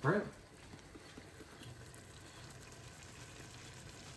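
Faint, steady sizzling of chicken and potatoes frying in curry paste in an open pot on the stove.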